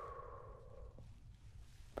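A soft, slow breath out through pursed lips, whispered and drawn out, trailing off about a second in. It is the exhale of a 'breathe in, breathe out' stethoscope check.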